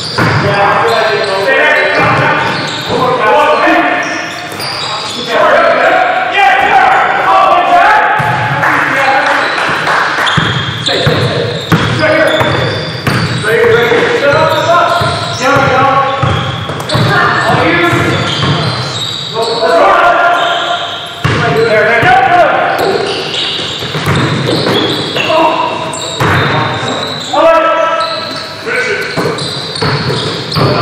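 Basketball bouncing on a gym floor amid voices, echoing in a large gymnasium.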